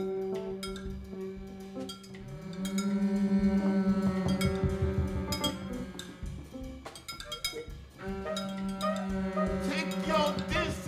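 Live improvised jazz: a bowed double bass holds long low notes, with one short upward slide, under grand piano, alto saxophone and scattered percussion. The music thins out briefly around two seconds in and again near eight seconds.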